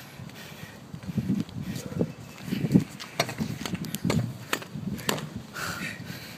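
A string of low, dull thuds on concrete, about ten of them, irregularly spaced half a second to a second apart.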